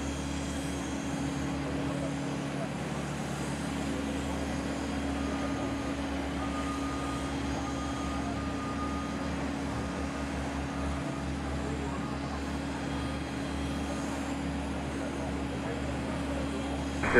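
Steady, even drone of jet airliner engines at idle thrust as aircraft taxi across the airfield, heard from a distance with a low hum underneath. A faint thin whine comes and goes in the middle.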